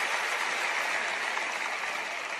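Audience applauding, steady, beginning to fade near the end.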